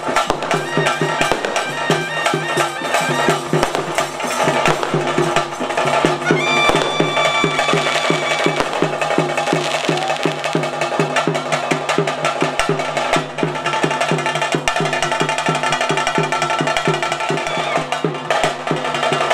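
Tulu bhuta kola ritual music: dolu drums beaten in a fast, even rhythm over a steady droning melody.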